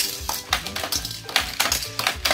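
Die-cast Hot Wheels cars being fired from a plastic toy car launcher, clattering in a quick run of sharp clicks and knocks, over background music.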